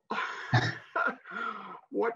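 A person coughing and clearing their throat in a few rough bursts, the first the loudest.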